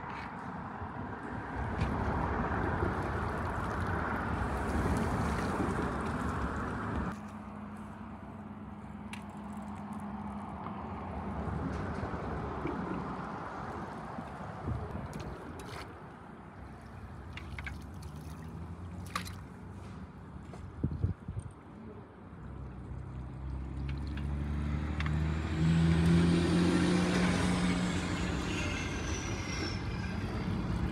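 Water noise as a long-handled dip net is held in a river current, with a few light knocks. In the last several seconds an engine drones in, growing louder, with a high whine that rises and falls.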